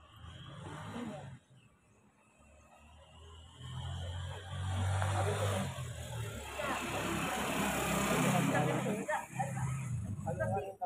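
A motor vehicle passing close by on the street, its engine hum and road noise building from about three seconds in and loudest near the end, with people's voices around it.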